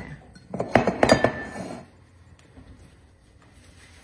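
A cluster of clinks and knocks against a large glass pickling jar as sliced cucumbers and other vegetables are pressed into it by hand. One knock leaves a short ringing tone. After about two seconds only faint handling noise remains.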